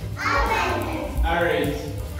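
A young child's voice calling out words loudly, in two short phrases.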